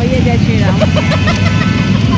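Steady low rumble of road traffic and wind heard on the move through busy city traffic, with people talking over it.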